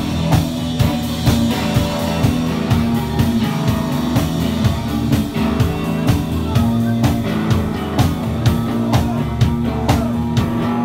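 Live rock band playing without vocals: a steady drum-kit beat of about two hits a second under electric guitar and bass.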